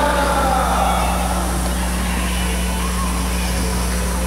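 A steady low electrical hum under general room noise, with a voice or music trailing off in the first second.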